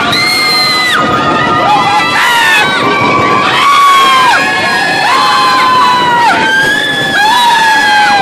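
Roller coaster riders, children among them, screaming. Many long, high screams overlap, each held about a second and falling off at the end.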